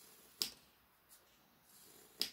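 Faint scratch of a graphite pencil drawing lines on paper, with one sharp click about half a second in.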